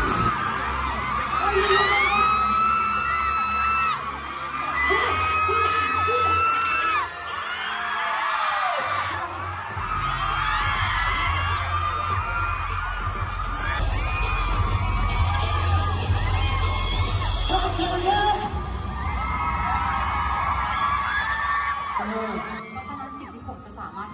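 Loud live pop concert music with a heavy pulsing bass, and a crowd of fans screaming and cheering over it in long, high, sliding shrieks.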